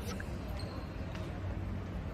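A steady low rumble of background noise, with a few faint ticks.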